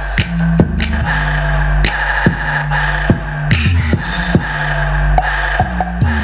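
Live electronic hip-hop beat played on a Roland SP-404SX sampler: pad-triggered drum hits over a sustained deep bass line that shifts pitch, with a held higher chord on top.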